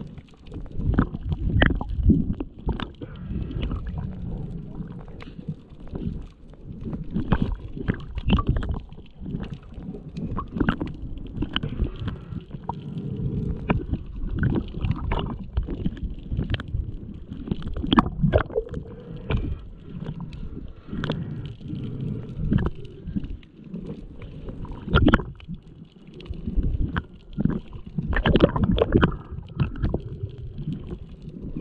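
Muffled underwater sound picked up through a camera housing: a low rumbling gurgle of moving water, with frequent irregular knocks and clicks throughout.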